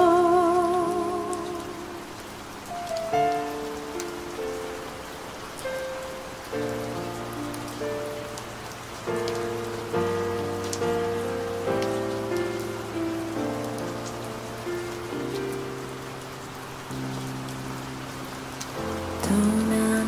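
Steady rain mixed under a slow ballad's instrumental passage of soft, held chords. A woman's sung note with vibrato fades out in the first second, and her singing comes back near the end.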